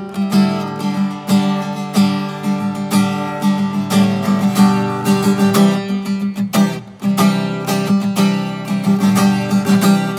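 Solo acoustic guitar playing, picked and strummed chords over a steady low note that rings underneath, with a brief break in the playing about seven seconds in.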